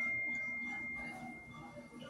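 A bell-like ding: one clear high tone that fades steadily away over about two seconds.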